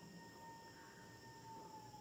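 Near silence: room tone with a faint, steady high tone.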